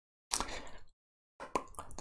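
A man's mouth noises in a pause between sentences: a short wet lip smack about a third of a second in, then a few small mouth clicks with a breath just before he speaks again. Between them the audio is cut to dead silence.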